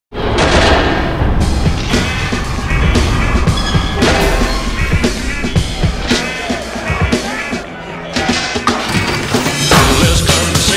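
Commercial soundtrack music, loud and dense, cutting in with a sudden hit after a brief drop to silence right at the start, and dipping briefly near the end.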